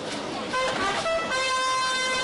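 Brass instruments sounding a few short notes, then one long steady note held from just past the middle, over crowd chatter.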